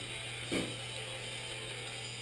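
A brief soft knock about half a second in, over a steady low hum: something being handled inside an open mini fridge.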